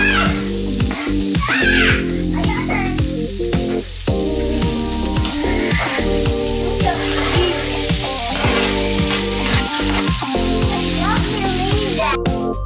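Chopped onion sizzling as it fries in hot oil in a frying pan, with stirring near the end as sweet pepper joins it. Background music with a steady beat plays underneath.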